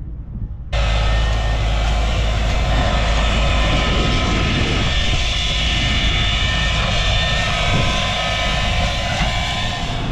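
John Deere tractor and its maize drill with film layer running close by, a steady engine drone with a high whine over it. It starts suddenly about a second in.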